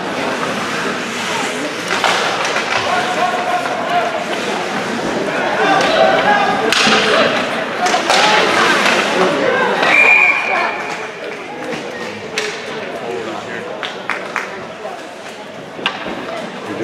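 Spectators' voices and shouting at a youth ice hockey game, loudest between about six and ten seconds in, with sharp knocks of sticks and puck. A short, steady, high whistle blast sounds about ten seconds in, typical of a referee stopping play.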